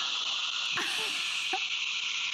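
Shark WANDVAC cord-free handheld vacuum running: a steady, high-pitched rushing whir, briefly sharper and hissier for about a second midway through.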